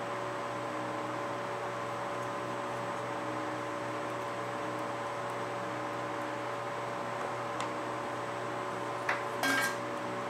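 Steady mechanical hum of a fan or similar machine running in a small workshop, with a few light clicks and taps about nine seconds in as objects are handled on the bench.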